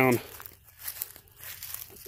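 Faint footsteps on dry grass and fallen leaves, a soft irregular crinkling as someone walks.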